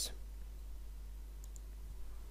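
Quiet room tone with a steady low hum, and a couple of faint clicks about one and a half seconds in.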